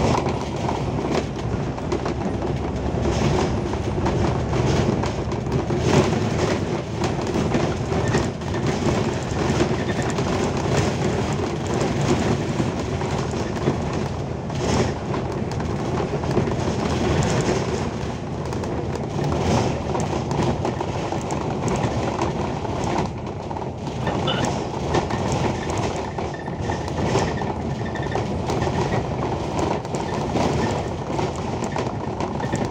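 Cabin noise inside an Alexander Dennis Enviro500 MMC double-decker bus cruising at speed: a steady mix of engine and road noise, with frequent small rattles and knocks from the body and fittings.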